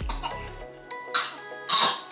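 Soft background music with sustained notes, broken twice in the second half by short, breathy coughs from a small child, the second one the louder.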